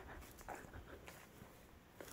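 Near silence: faint outdoor background with a few soft, brief rustles.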